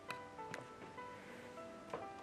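Quiet background music of soft, separate sustained notes, with a few light clicks. Near the end a click as a kitchen cabinet door is pulled open.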